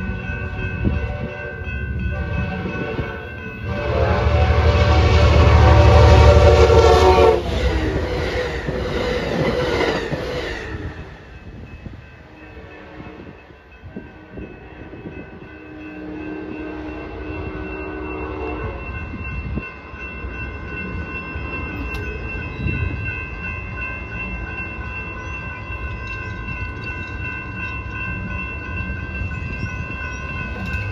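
A train's horn sounds a long, loud blast over the heavy low rumble of the approaching locomotive, about 4 to 10 seconds in. After that, fainter steady ringing tones carry on, fitting the bells of a grade crossing with its gates down.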